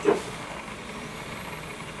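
Steady low room noise, an even hiss with a faint hum under it, right after a man's voice breaks off at the very start.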